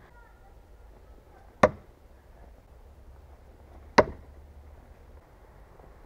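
Two sharp thunks about two and a half seconds apart: a heavy throwing knife (Cold Steel Perfect Balance Thrower) striking a wooden target, each hit with a short ring.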